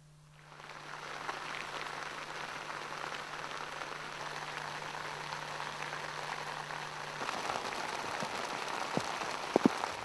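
Steady hiss of rain falling on rock and vegetation. A faint low hum stops about seven seconds in, and a few sharp clicks come near the end.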